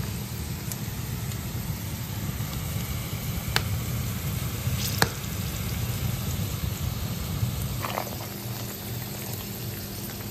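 Chopped onion sizzling steadily as it fries in oil in a frying pan. A few sharp light clicks come about three and a half and five seconds in, and a short rattle near eight seconds.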